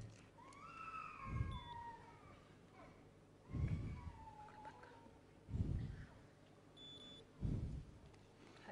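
Faint bumps and rustle on a headset microphone as its wearer handles a glucometer: four short low thuds a couple of seconds apart. Faint wavering voices in the background, and two short high electronic beeps, the second near the end.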